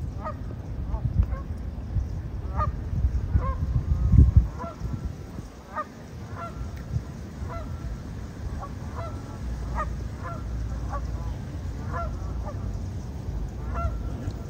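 Waterfowl giving short honking calls, one or two a second and fairly faint, throughout. Low wind rumble on the microphone in the first few seconds, loudest about four seconds in.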